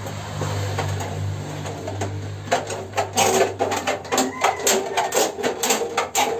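Tin snips cutting a corrugated zinc roofing sheet: a quick run of sharp metal snips, about three or four a second, starting about two and a half seconds in. A low steady hum fills the first two seconds.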